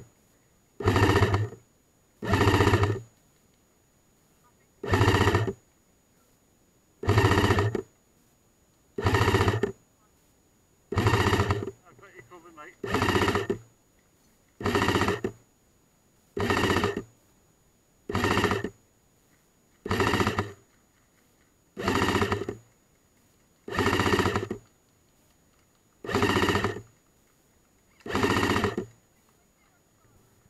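Airsoft light support gun firing short bursts of full-auto, about fifteen bursts of well under a second each, evenly spaced about two seconds apart.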